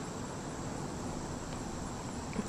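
Quiet, steady chorus of insects: one even high trill that does not change, over a low background hiss.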